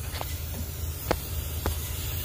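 Compressed air hissing steadily from a leaking brass fitting at an air-suspension pressure switch, over a steady low hum, with a few faint ticks. The leak keeps the pressure switch from working, and the owner says it is probably from gripping the fitting with vise grips.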